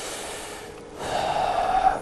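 A man breathing audibly into a close microphone: a soft breath, then a louder, longer breathy exhale from about a second in.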